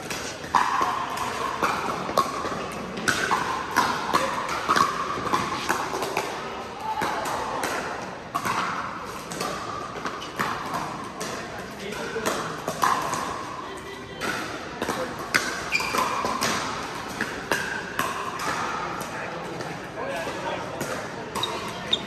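Pickleball paddles striking hard plastic balls, sharp pops at irregular intervals from several courts, mixed with indistinct chatter of players, echoing in a large indoor hall.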